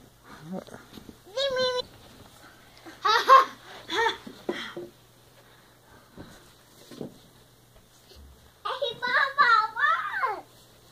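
Young children's high-pitched laughter and squeals in a small room, in short spells about a second and a half in, from about three to four and a half seconds, and again near the end.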